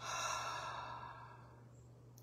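A woman's long, audible sigh out through the open mouth, starting suddenly and fading away over about a second and a half.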